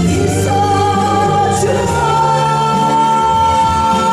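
A woman singing live into a microphone with instrumental accompaniment, holding a long sung note from about two seconds in.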